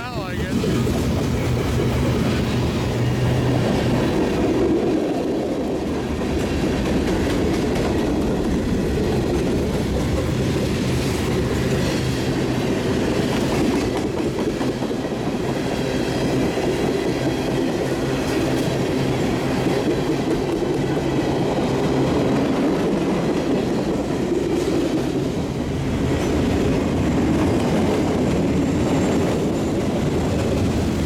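Freight train passing: steady rumble of steel wheels on the rails as covered hoppers, tank cars and steel-coil cars roll by.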